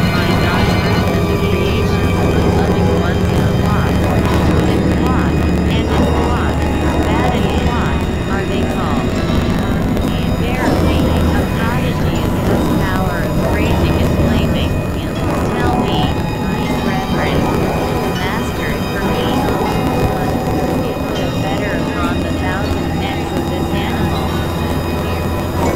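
Experimental electronic drone music from synthesizers: a dense, continuous layer of steady low hum and held tones, with many short chirping, gliding sounds flickering over the top. It thins slightly about halfway through.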